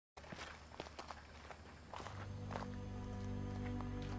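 A few scattered footsteps, then a soft film score of sustained low notes swells in about two seconds in.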